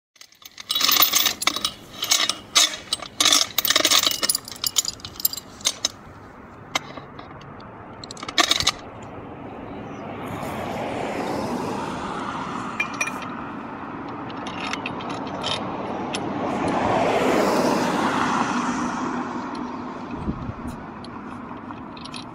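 Steel chain clinking and rattling against a steel base plate in quick, loud jangles as it is looped and hooked around a parking-meter post, with a few more clinks afterwards. Later a rushing noise of passing traffic swells twice and fades.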